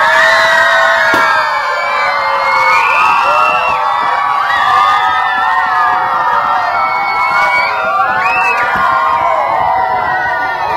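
A group of schoolchildren cheering and shouting together, many high voices overlapping in a loud, sustained cheer that breaks out suddenly and keeps going.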